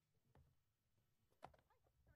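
Near silence: faint room tone with two soft knocks.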